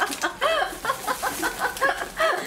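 A woman and a boy laughing heartily together, a quick run of short bursts, about five a second.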